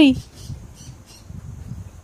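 A voice calling 'uy' in a high, falling pitch, cut off just after the start, then quiet room noise with a faint low rumble.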